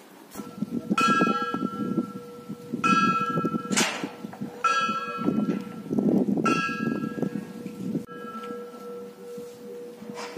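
Church bells rung live by hand: a higher bell is struck five times, about every two seconds, each stroke ringing on, over a steady lower tone.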